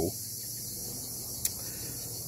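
Steady, high-pitched outdoor insect chorus, with one short click about one and a half seconds in.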